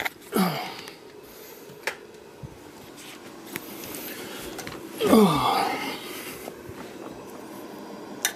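Coleman 200A pressure lantern's burner hissing steadily as it runs. A couple of sharp clicks come in the first two seconds, and two brief low voice sounds glide down in pitch, the louder one about five seconds in.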